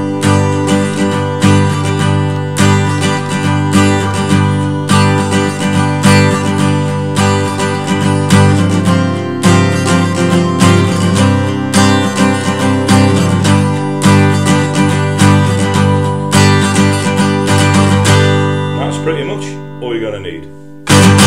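Capoed Taylor 214ce steel-string acoustic guitar strummed in a steady repeating pattern of down and up strokes through the song's chords. The last chord is left ringing and dies away near the end.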